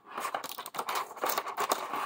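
Clear plastic blister tray crinkling and crackling in the hands, a run of irregular small clicks, as fingers pick at the tape holding it shut.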